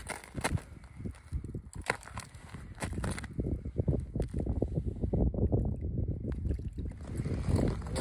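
Footsteps on snow-covered ice: a few separate sharp crunches, then from about halfway a quicker, denser run of low crunching and scraping.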